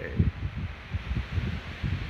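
Wind buffeting a phone's microphone: an uneven low rumble with a faint hiss.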